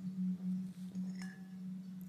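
A steady low hum, a single pure tone that wavers slightly in level.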